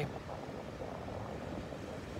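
Steady wash of small ocean waves breaking on the beach.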